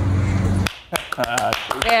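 A steady low hum cuts off sharply under a second in. Then come a few sharp clicks or taps, and a voice starts speaking.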